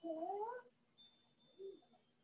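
A cat meowing: one drawn-out meow that rises in pitch, then a short one about a second and a half in.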